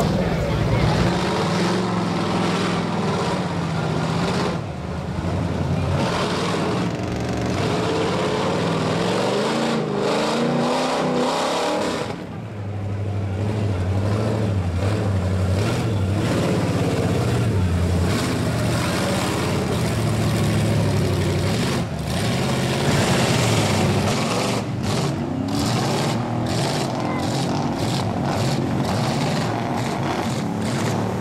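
Mud truck engines revving hard as they plow through a mud bog, the pitch rising and falling with the throttle, over a steady wash of churning mud and water. The sound breaks off briefly about twelve seconds in, then picks up again.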